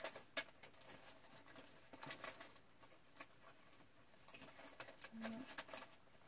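Faint, scattered clicks and rustles of small scrapbooking supplies being handled and sorted. A brief low hum comes a little after five seconds in.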